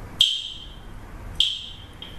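Metronome beeping twice, about a second and a quarter apart: short high beeps that die away quickly, marking a slow tempo as a count-in.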